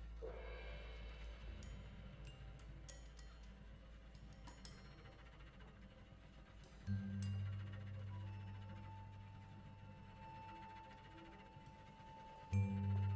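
Quiet free-improvised jazz from cornet, cello, double bass and drums: sparse clicks and light taps, a deep note about seven seconds in, then a high held tone.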